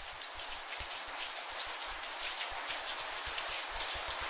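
Rain falling, a steady patter of drops that slowly grows louder: a rain-sound layer opening a lofi track.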